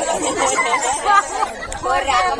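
Speech: people talking continuously, in spoken dialogue rather than song.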